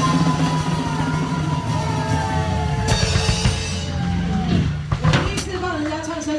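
A drum kit played along to a rock song with guitar, with two sharp crashes about three seconds in and again near the end.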